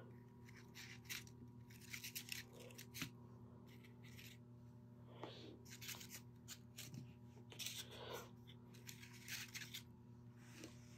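Faint rustling and crinkling of paper peony flowers being handled and pushed together on a wreath board, in short scattered bursts over a steady low hum.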